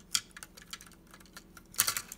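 Plastic LEGO pieces clicking and knocking on a hard countertop: a few light clicks, then a louder cluster of clicks near the end.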